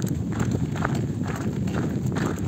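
Footsteps crunching on a gravel track, about two to three steps a second, over a steady low rumble.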